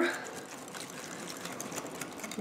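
Wire whisk beating thick cranberry and chili sauce in a glass bowl: a steady, rapid wet swishing with many light ticks.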